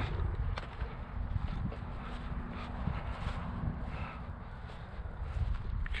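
Footsteps on dry, mowed grass, irregular soft thuds and rustling, with a faint steady hum underneath.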